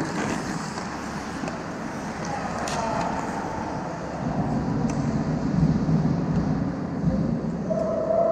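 Close-range ice hockey play: skate blades scraping the ice, with a few sharp clacks of stick and puck around the goal, heavier scraping in the second half. Indistinct players' voices in an echoing rink.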